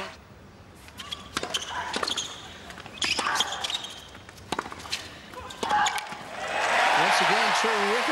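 Tennis rally on a hard court: a series of sharp racket-on-ball strikes and ball bounces, spaced about half a second to a second apart. From about six and a half seconds in, crowd applause and cheering swell up loudly as the point is won.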